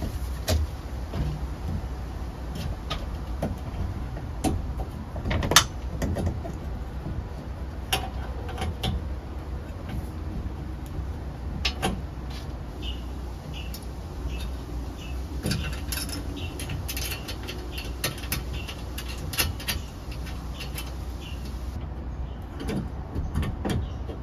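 Handling noise of yellow 12/2 Romex cable and a cable clamp being worked into a metal electrical ceiling box: irregular clicks, scrapes and knocks of metal and plastic, with one loud knock about five and a half seconds in. A steady low hum runs underneath.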